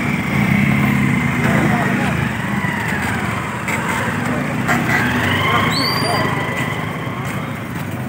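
Motorcycle engines running steadily under several people shouting.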